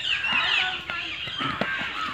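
Domestic fowl calling: a run of short, high calls that glide up and down in pitch.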